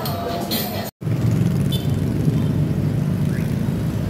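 Supermarket background music with shoppers' chatter for about a second, then, after a sudden cut, a steady low rumble of outdoor road traffic.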